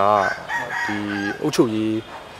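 A man's voice holding long drawn-out vowels, with a rooster crowing faintly behind it.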